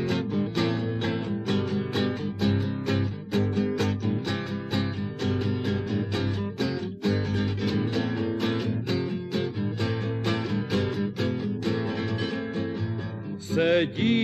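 Acoustic guitar playing the instrumental introduction of a song, plucked and strummed in a steady regular rhythm. A man's singing voice comes in at the very end.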